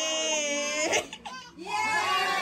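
An infant crying: one long, high wail that breaks off about a second in, then after a short pause a fresh cry starts near the end.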